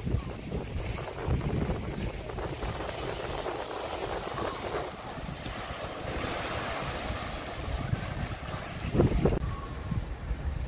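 Small sea waves breaking and washing over shoreline rocks, with wind buffeting the microphone; a louder rush of wind about nine seconds in.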